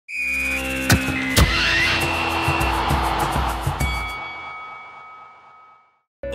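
Broadcast channel logo sting: electronic tones with two sharp hits about a second in, under a swelling whoosh that gradually fades out.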